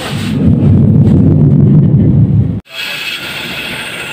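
A loud low rumble for about two and a half seconds, then a sudden cut to the steady hum of a belt-driven bench grinder running.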